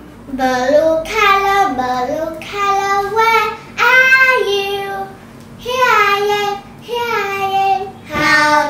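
A child singing a simple melody in several short phrases, with held notes and brief pauses between phrases.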